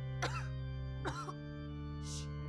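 Film score of long held chords, with two short, sharp sounds about a second apart laid over it, the first the louder.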